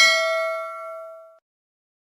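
A single bell ding from a notification-bell sound effect, played as the bell icon is clicked. It is struck just before and rings out in a bright chime, fading away by about a second and a half in.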